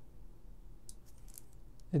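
A few faint, short clicks about a second in as the red momentary trigger push button is pressed, starting the XY-LJ02 relay timer and switching its relay on. A low steady hum lies underneath.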